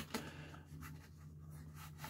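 Faint scratching and rustling of a razor box and its foam insert being handled, with a short click at the start, over a low steady hum.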